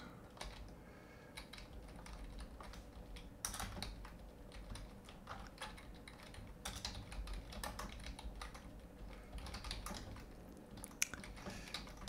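Faint, irregular typing on a computer keyboard, in short runs of keystrokes with pauses between them.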